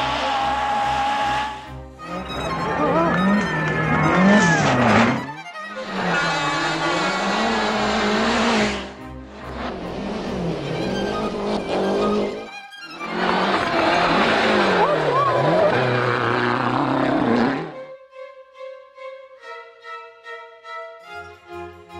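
Racing engine revving hard, its pitch repeatedly climbing and falling through gear changes, in three loud runs with brief breaks between them. Near the end it gives way to violin-led music.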